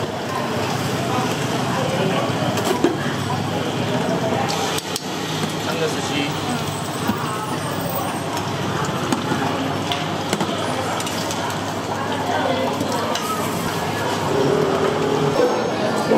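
Busy noodle-stall kitchen sounds: a steady background of indistinct voices with light clinks of ladles, bowls and metal pots, and a few sharp knocks.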